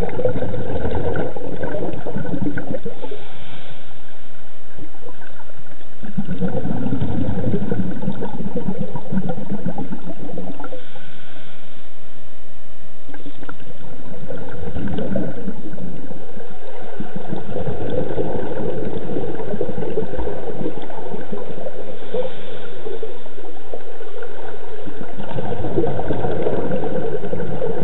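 Underwater gurgling of a scuba diver's exhaled bubbles from the regulator, coming in repeated bursts a few seconds long.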